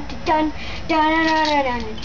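A child singing a wordless "dun dun" tune as stand-in chase music: two short notes, then one long held note that sags slightly in pitch near the end.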